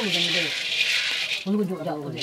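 Dry grains rattling and hissing in a hot metal wok over a wood fire as they are stirred by hand; the stirring sound breaks off briefly near the end.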